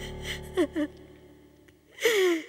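A woman sobbing in short gasping cries, a few falling in pitch about half a second in, over background music that fades out.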